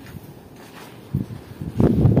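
Footsteps scuffing on a sandy dirt floor, faint at first and louder near the end.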